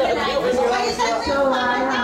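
Several people talking at once around a table: overlapping conversational chatter.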